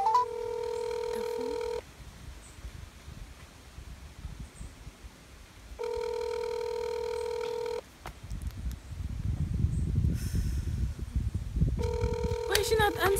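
Phone ringback tone from a smartphone on speakerphone as an outgoing call rings unanswered: three two-second rings about four seconds apart, the last starting near the end. A low rumble builds in the last few seconds.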